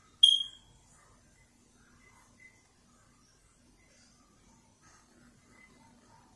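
A single short, high-pitched electronic chirp about a quarter second in, fading within half a second, then faint room tone.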